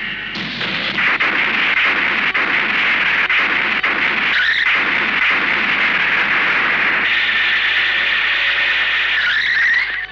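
Heavy rain, a loud steady hiss, with a brief wavering higher-pitched squeal about four and a half seconds in and again near the end.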